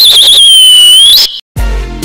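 A loud, high whistle that warbles at first, then holds one note and rises at the end before cutting off just over a second in. After a short silence, an electronic music sting with a deep beat starts near the end.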